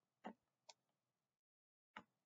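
Near silence, broken by three faint, short clicks.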